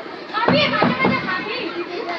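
Several young voices talking and calling out over each other, with two sharp taps about half a second and a second in.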